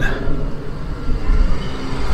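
Low, uneven rumble of outdoor city background noise, with no distinct event standing out.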